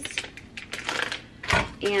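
Plastic packaging of sliced vegan cheese crinkling and crackling in quick small clicks as a slice is peeled out, with a single thump about a second and a half in.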